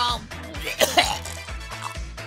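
A voice coughs sharply twice about a second in, over background dance music with a steady low beat.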